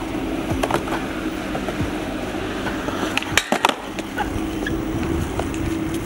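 Skateboard wheels rolling on concrete with a steady rumble, broken by a few clacks. About three and a half seconds in, a sharp pop is followed by a moment with no rolling sound and then a landing clack, as of a trick being popped and landed.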